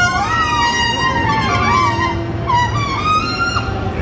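A wind instrument played live, a single melodic line that bends and slides in pitch, over the murmur of a crowded exhibition hall.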